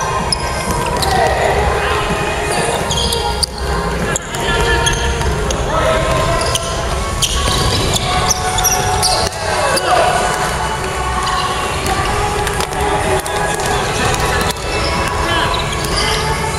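Basketball game in a gymnasium: the ball dribbling and bouncing on the wooden court, with players' voices calling out in the large hall.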